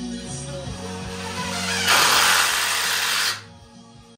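Background music, with a power drill running briefly about two seconds in, louder than the music for over a second, likely driving a screw into the 2x4 framing lumber.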